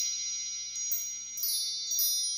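Wind-chime sound effect: many high, bright tones ringing on and slowly fading, with a few light new strikes scattered through.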